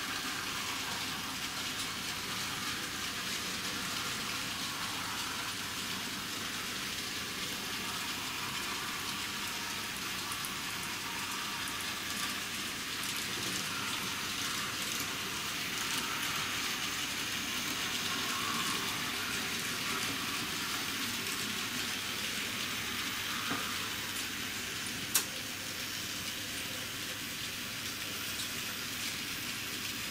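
N-scale model trains rolling over the track, a steady rushing hiss of small wheels on rails that swells a little in the middle, with one sharp click about 25 seconds in.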